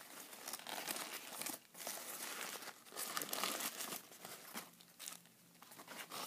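Paper burger wrapper crinkling and rustling as it is unfolded by hand, in irregular crackles with a brief lull about five seconds in.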